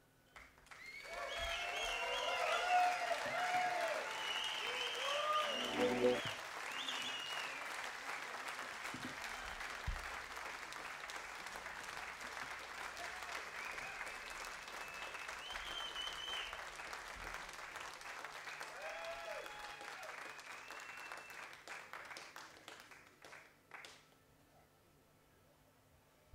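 Concert audience applauding with whistles and shouted cheers at the end of a song. The applause is loudest in the first six seconds, then thins out and dies away near the end.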